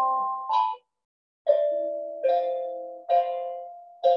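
Steel tongue drum struck one note at a time, about four strikes a second or so apart at a few different pitches, each note ringing and fading away. There is a short silence about a second in.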